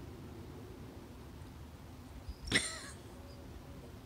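A woman's short, strained throat sound, a brief pitched gulp or whimper about two and a half seconds in, as she forces down a large capsule with a drink. Faint steady background noise otherwise.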